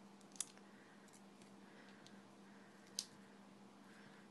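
Paper-craft materials handled on a desk: cardstock and a sheet of Stampin' Dimensionals foam adhesive squares, giving two short sharp clicks about two and a half seconds apart and a few fainter ticks, over a faint steady hum.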